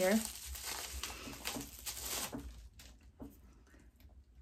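Plastic bubble wrap crinkling as it is pulled off a small highlighter compact, for about two and a half seconds, then dying away with a faint click.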